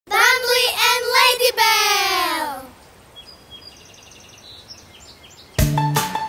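A high, child-like voice sings a short intro jingle lasting under three seconds and ends on a long falling slide. Faint bird chirps follow, and near the end a song's backing music with a steady beat starts.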